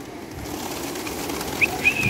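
A flock of domestic pigeons taking off from a loft roof, many wings flapping in a building flutter, with two short high whistle-like notes near the end.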